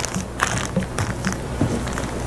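Plastic bag crinkling and rustling under the hands as the soft charcoal-and-psyllium jelly inside is pressed and rolled flat, in soft, irregular crackles.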